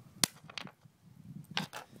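Nitrogen triiodide contact explosive detonating on concrete: one sharp, loud crack about a quarter second in, followed by a few fainter snaps as leftover bits go off.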